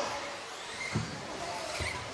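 1/10-scale electric 4WD RC buggies racing on an indoor carpet track: a steady hiss of motors and tyres, with faint low thumps about one second in and near the end.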